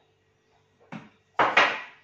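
Dishes and food containers being handled: a short knock about a second in, then a louder scraping clatter about half a second later, over a faint steady hum.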